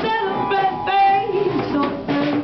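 Female voice singing a jazz melody into a microphone over a small live jazz band, with notes gliding and held briefly.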